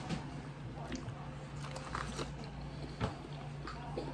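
A man biting and chewing corn on the cob, the kernels giving small wet clicks and crunches, one louder about three seconds in. A steady low hum runs underneath.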